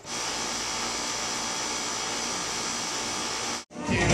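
A steady, even rushing hiss with no clear pitch, cut off suddenly near the end.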